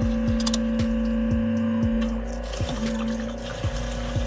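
S&B fuel-tank transfer kit's electric pump running with a steady whine while diesel pours from the nozzle into a plastic fuel can.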